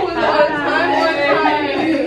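Several people talking at once, their voices overlapping in a continuous chatter.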